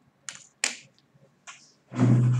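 Three or four short, sharp clicks or taps, then a louder noise with a steady low hum starting near the end.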